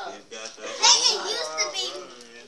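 Children's voices, talking and calling out over each other while playing, loudest about a second in.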